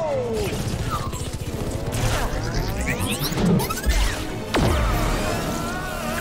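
Film action soundtrack: dramatic score mixed with sweeping whoosh and energy sound effects and crashing impacts, with a sharp hit and low boom about two-thirds of the way through.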